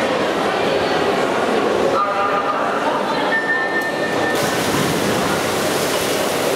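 Crowd noise in an indoor pool hall goes quieter about two seconds in. An electronic race-start beep then sounds once for about a second, and right after it comes a rush of splashing and cheering as the swimmers dive in and start racing.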